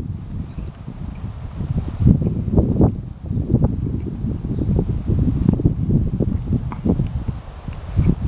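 Wind buffeting the camera microphone as a low, uneven rumble that swells in gusts, louder from about two seconds in, with leaves rustling.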